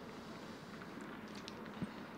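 Faint, steady background ambience of an open-air cricket ground between deliveries, with a faint short knock near the end.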